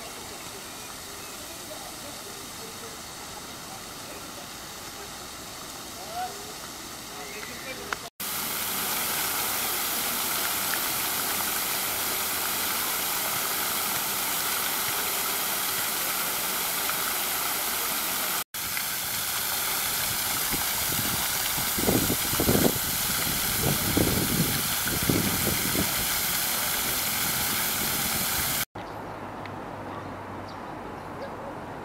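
Park fountain jets spraying and splashing into the basin: a steady rushing hiss of falling water. It is softer at first and fuller after about eight seconds, when the jets are close. A few louder people's voices rise over it in the later part.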